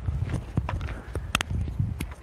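Footsteps of a hiker walking on a trail: irregular steps and small knocks over a low rumble, with one sharper click a little past halfway.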